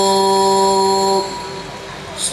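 A man's voice holding one long, steady sung note of a qasidah chant, which breaks off a little over a second in and leaves a quieter pause.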